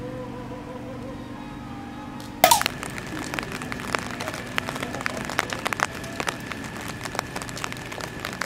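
Rain falling: a steady hiss with many irregular sharp drop clicks, starting suddenly about two and a half seconds in. Before it, a faint held electronic sound-effect tone fades out.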